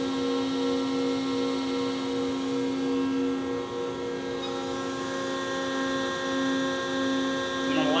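Electric motor and hydraulic pump of a hydraulic rod-pumping unit running through its cycle with a steady hum, its tone shifting slightly about halfway through.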